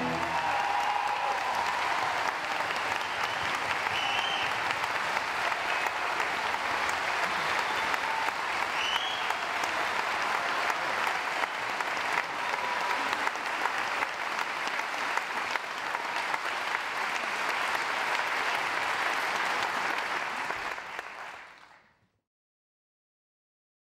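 Theatre audience applauding steadily after an opera aria, with a couple of brief calls rising above the clapping; the applause fades out near the end.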